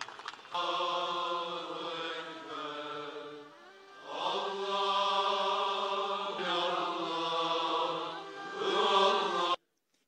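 A choir chanting a slow religious melody in long held notes, in two long phrases with a brief dip between them, cut off abruptly just before the end.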